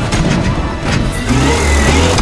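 Film action soundtrack: an armoured military truck's engine revving under a dramatic music score, with a sharp crash about a second in.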